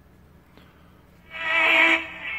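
Small speaker of a Life Gear Stormproof crank radio giving a steady, buzzy tone for about a second, starting past the middle.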